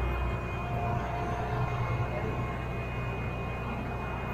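Heavy diesel engine running steadily, a low rumble with a faint high whine held above it.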